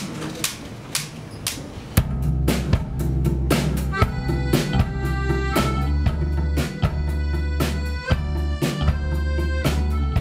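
Live band playing the instrumental opening of a slow song: drums keep a steady beat, and about two seconds in the full band enters with a heavy low end, electric guitars and accordion.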